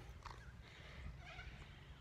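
Near silence: a faint low background rumble.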